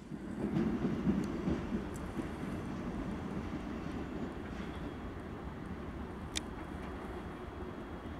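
SA109 diesel railbus pulling away over the station tracks. Its engine and wheels make a low rumble that slowly fades as it recedes, with a single sharp click a little past six seconds in.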